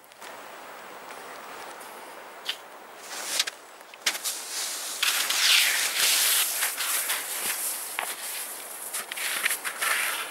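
Wooden birch skis sliding and crunching over spring snow, stride by stride, with ski poles planting. The skiing sound starts abruptly about four seconds in, after a few seconds of faint steady hiss.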